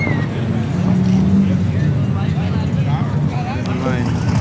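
A vehicle engine running steadily at low revs, with people talking nearby.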